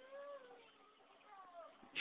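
Faint, drawn-out high-pitched vocal sounds that glide up and down in pitch: a long one at the start and a shorter, falling one near the end.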